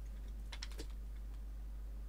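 A few quick, light clicks close together about half a second in, over a steady low hum.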